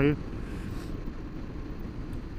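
Honda Varadero 1000's V-twin engine running steadily at cruising speed, heard as an even, low rumble.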